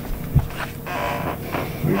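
Sheets of paper being handled and shuffled at a meeting table, with a soft knock on the table about half a second in; a man starts speaking near the end.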